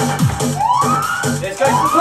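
Electronic dance workout music: a steady kick-drum beat of about two per second, broken by two rising, siren-like synth swoops, after which the low beat drops out.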